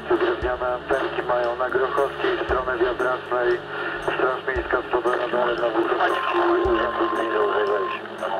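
AM CB radio reception through the President Harry III's speaker: voices talking over the channel, narrow-band and tinny. A steady whistle tone sounds over them for about two seconds near the end.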